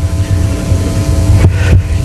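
Steady low hum and rumble of a lecture hall's room and sound system between words, with faint steady tones that stop about one and a half seconds in.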